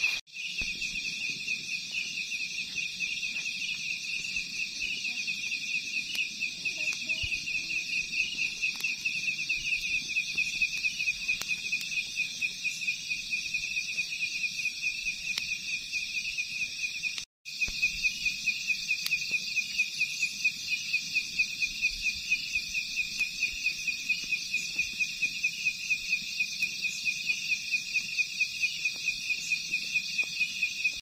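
Night insects chirping in a dense, steady chorus, a fast even pulsing trill. The sound cuts out briefly twice, just after the start and about halfway through.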